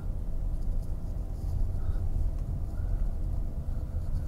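Mercedes-Benz R129 500SL's 5.0-litre V8 running steadily while the car is driven slowly, with a low rumble of engine and road noise heard inside the cabin. The engine is running with its air filters removed.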